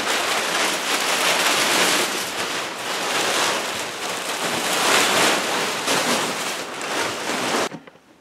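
A black plastic tarp rustling and crinkling as it is dragged off a snowmobile, in uneven surges, stopping abruptly near the end.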